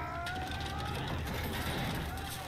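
Episode soundtrack of a sword fight: a long high voice that rises slightly in pitch, over clattering.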